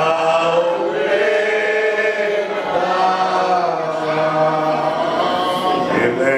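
A group of voices singing together in a slow chant, holding long notes that glide gently up and down.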